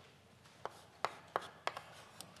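Chalk writing on a blackboard: a run of about five short, sharp taps beginning a little after halfway.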